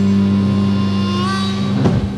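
Closing bars of a 1965 beat record: a held, ringing chord with a note bending upward a little past halfway, then a sharp final hit near the end as the sound starts to die away.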